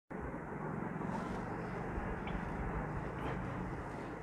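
Steady background noise with a low, wavering hum: room tone, with no distinct event.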